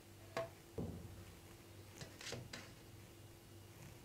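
Faint knocks and taps on a metal baking tray as slices of cake are set down on it: two sharper knocks within the first second and a few lighter clicks around the middle.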